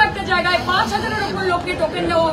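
Speech only: a woman talking forcefully, with no pause.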